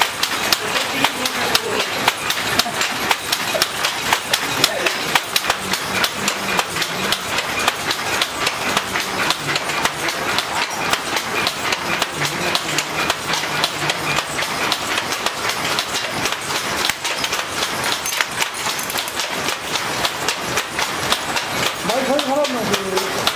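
Wooden hand looms at work: a dense, steady clatter of shuttles and beaters knocking, wood on wood, from several looms weaving at once.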